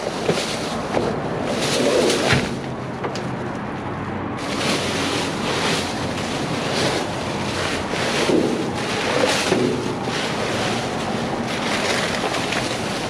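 Plastic bags and thin plastic film rustling and crinkling continuously as they are pulled, lifted and pushed aside by hand and with a grabber tool.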